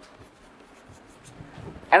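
Chalk writing on a chalkboard: faint scratches and ticks of the chalk stick as a word is written out.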